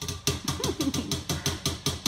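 A rapid, even series of sharp clicks or taps, about six a second, with a faint wavering pitched sound underneath.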